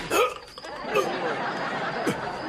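Sitcom laugh track: a studio audience laughing, with many short overlapping laughs from different voices, dipping briefly about half a second in.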